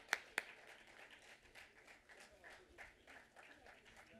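Two sharp hand claps close to the microphone at the start, then fainter applause from an audience that thins out.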